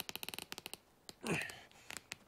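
Rope-hung wooden swing creaking under a standing person's weight, a rapid run of sharp clicks, then a brief falling sound a little over a second in.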